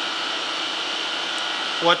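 Steady whir of running machine-shop machinery with a thin, high, continuous whine on top.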